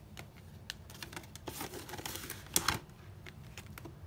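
Paper handling at a desk: a tracker card and ring-binder pages being shuffled and flipped, a run of light clicks and rustles with a louder flick about two and a half seconds in.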